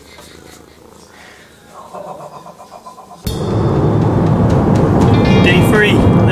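A domestic cat purring close to the microphone, a faint rhythmic pulsing, then a sudden cut about three seconds in to loud, steady road noise inside a moving car's cabin, with music over it.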